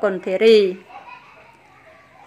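A woman speaks briefly, a high voice lasting under a second. A pause follows with only faint background hiss.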